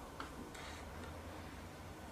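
Faint low steady hum with a sharp click just after the start and a fainter click soon after.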